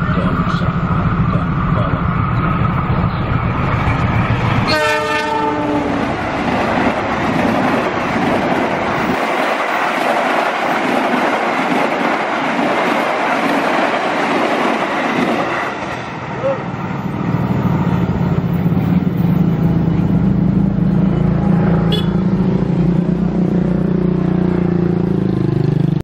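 A diesel locomotive approaches with its engine running and gives a short horn blast about five seconds in. Its passenger carriages then pass with a long rumble and clatter of wheels on rail. After the train clears, road engines idle and move off over the crossing near the end.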